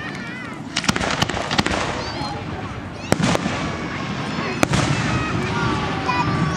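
Aerial fireworks bursting: a quick cluster of sharp bangs about a second in, two more a little after three seconds, and a single one past four and a half seconds.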